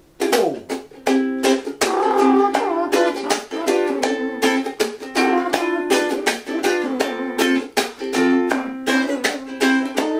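A small ukulele strummed in a laid-back reggae beat. It plays the intro chords C, G7, Am, G7 and then F, C, Dm, G7, starting about half a second in.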